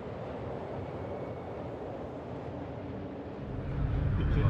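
Steady outdoor ambience: a noisy hiss and rumble with no distinct events. A deep rumble swells in the last half second.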